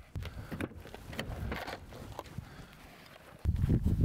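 Faint scattered footsteps in dry desert brush, then, about three and a half seconds in, a sudden louder low rush of wind and rustling as a backpack is hauled out of a pickup truck.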